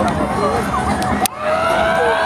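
Several people screaming at once, in shrill overlapping screams that slide up and down; a little over a second in, new long held screams begin.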